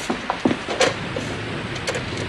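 A few sharp clicks and knocks from a telephone being handled: the receiver lifted and the hook tapped on a dead line. The clicks sit over a steady background hiss.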